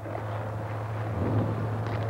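A steady low hum under a faint, even rushing noise of outdoor field sound.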